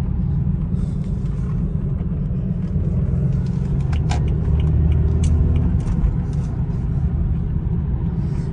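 BMW 4 Series driving on the road, heard from inside the cabin: a steady low rumble of engine and road noise that swells a little around the middle.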